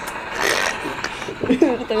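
Two people laughing quietly and murmuring, with a breathy, rustling sound about half a second in.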